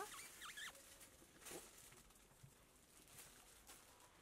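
Near silence with faint, scattered rustling of cloth as garments are handled. A brief high squeaky chirp comes right at the start.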